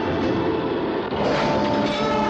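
Film soundtrack of sustained orchestral music over a steady rumbling drone, with a loud rush of noise swelling in a little over a second in.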